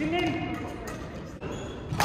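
A short voice call rings out in a large echoing sports hall, then a few sharp light knocks from the badminton play on the courts.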